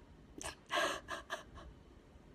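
A woman's short, breathy laugh: a quick run of about five puffs of breath, the second the loudest.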